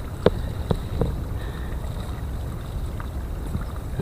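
Wind buffeting the microphone outdoors, a steady low rumble, with a few faint clicks in the first second and one more near the end.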